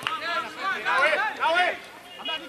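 Men's voices shouting and talking during a goal celebration.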